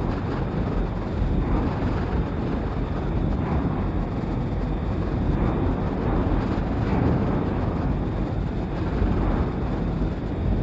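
Dark ambient drone: a dense, steady rumbling wash of noise made from processed field recordings of car assembly plant machinery, with small swells in level.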